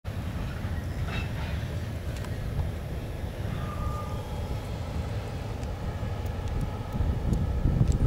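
Distant, steady rumble of an EMD GP-series ("Geep") diesel road-switcher locomotive moving slowly, with wind buffeting the microphone and swelling near the end.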